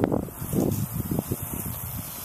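Rustling of potato vines and weeds being handled, with wind on the microphone and a few soft bumps.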